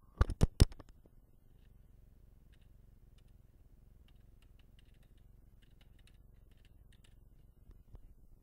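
Computer keyboard typing: a few sharp, loud clicks in the first second, then soft, irregular keystrokes in quick runs.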